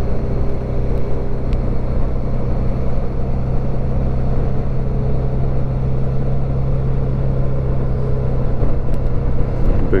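Suzuki V-Strom 650's V-twin engine running at a steady cruising speed, its even low hum mixed with wind and road noise on the bike-mounted microphone.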